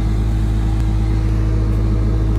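Skid-steer loader engine running steadily, a constant low drone with no change in pitch.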